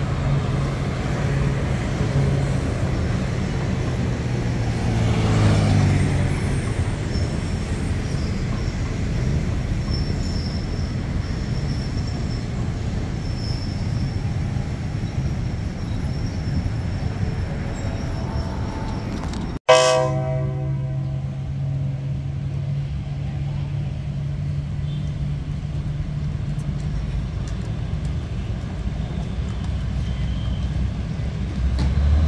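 Diesel train running with a steady rumble, and a horn sounding about five seconds in. After a sudden cut about two-thirds of the way through, a diesel railcar's engine idles with a steady low drone.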